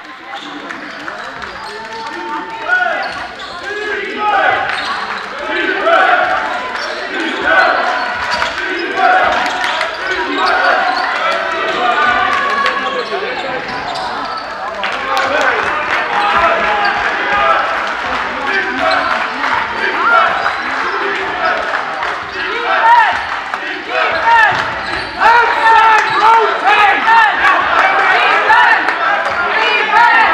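Live basketball game in a sports hall: a basketball bouncing on the court amid loud, continuous shouting from many voices, fans and players. The noise builds over the first few seconds and is loudest near the end.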